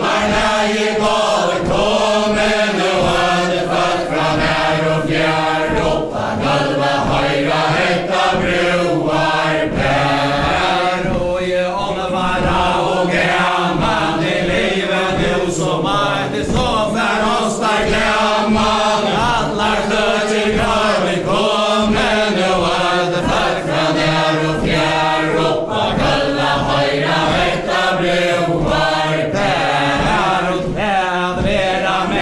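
A mixed group of men and women singing a Faroese chain-dance ballad together without instruments, over the regular tread of the dancers' feet on a wooden floor.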